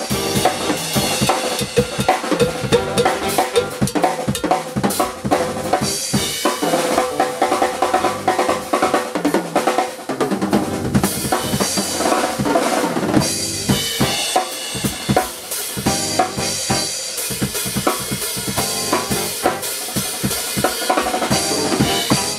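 Jazz drum kit played as a solo: rapid snare strokes, rimshots and rolls with bass drum kicks and cymbal crashes in a dense, busy passage.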